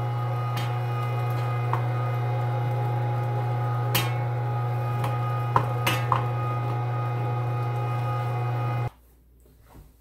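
Electric meat grinder running steadily with a strong low hum, extruding seasoned sausage meat on its second pass, with a few light clicks; the sound cuts off suddenly near the end.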